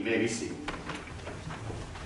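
A congregation sitting down in wooden church pews after a song: scattered knocks, bumps and shuffling, with a short voice sound at the very start.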